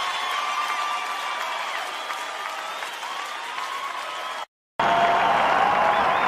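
Live concert audience applauding and cheering after a song ends. The sound cuts out completely for a moment about four and a half seconds in, then comes back louder, as at a splice between two recordings.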